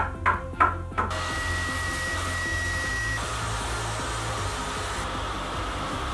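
Table saw running and ripping a wooden board into narrow strips: a steady rushing noise that starts about a second in, with a thin high whine for the first couple of seconds.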